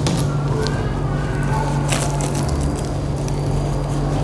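Steady low room hum, with soft rustling of fingers digging through sand in a foil tray and one sharp click about two seconds in, like a plastic letter dropped into a plastic basket.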